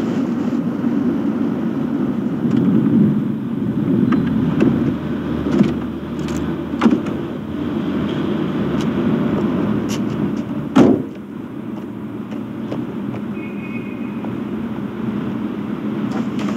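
Steady low rumble of a car heard from inside its cabin, with a few light clicks and one car door slamming shut about eleven seconds in, after which it is quieter.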